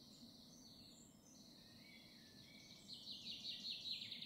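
Faint songbird chirps, thin and high, with a quicker run of repeated notes growing louder near the end.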